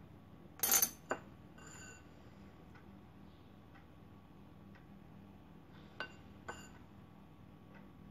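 Metal spoon clinking and scraping against a bowl of melted chocolate: a loud clink about a second in, a quicker tap after it, then two more light clinks around six seconds, each with a brief ring.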